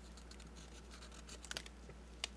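Felt-tip marker scratching on paper in short strokes as numbers are written, faint, with a few sharper ticks about one and a half seconds in. A steady low hum sits underneath.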